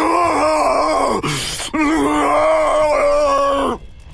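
A man's voice letting out two long, drawn-out crazed cries, with a sharp breath between them just after a second in.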